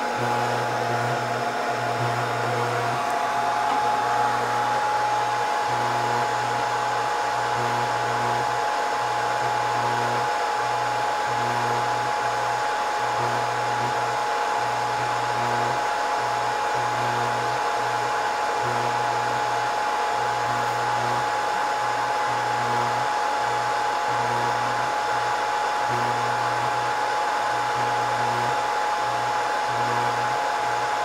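Hot-air blowers of a Scotle IR360 BGA rework station running steadily through a reflow profile: a constant blowing rush with a steady whine. A low hum cuts in and out every second or two.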